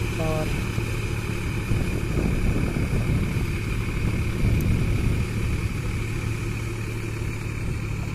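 New Holland 4710 Excel tractor's three-cylinder diesel engine running steadily as it pulls a rotary tiller through a flooded, muddy field.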